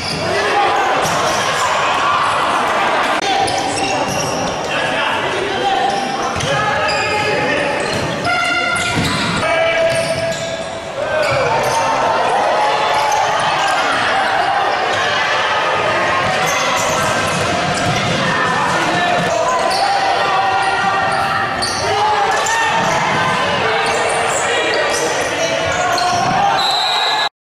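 Futsal ball being kicked and bouncing on a wooden indoor court during live play, with players shouting and spectators talking throughout, all echoing in a large sports hall.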